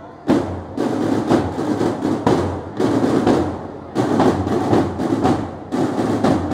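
A student drum corps of marching snare drums playing a repeating rhythmic beat in phrases about two seconds long.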